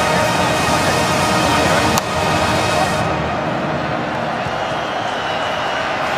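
Music playing over stadium crowd noise, with a sharp click about two seconds in. About a second later the sound turns duller as the highs drop away.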